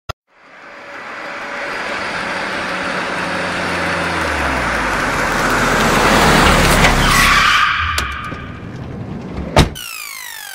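Car sound effect: an engine revving and growing steadily louder over several seconds, peaking with a tyre squeal about seven seconds in, then fading away. A single sharp knock sounds near the end.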